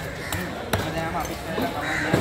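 Heavy cleaver chopping through manta ray flesh and cartilage into a wooden chopping block, with a sharp knock about three-quarters of a second in and lighter strikes around it; voices in the background.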